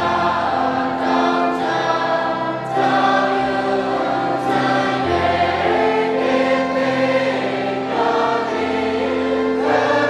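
A slow hymn sung by a group of voices, with keyboard accompaniment under long held notes that change in steps.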